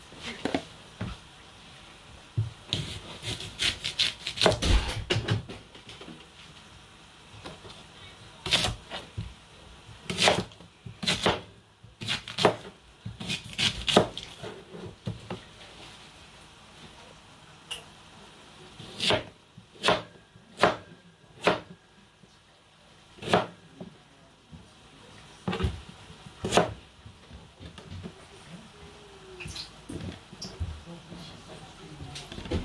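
Kitchen knife cutting through a raw yam and knocking on a plastic chopping board: irregular sharp chops, with quick runs of strokes about three to five seconds in and again around ten to fourteen seconds in, then single spaced knocks.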